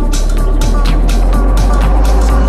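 Techno music: a continuous heavy low bass under evenly repeating high ticking percussion and short synth notes.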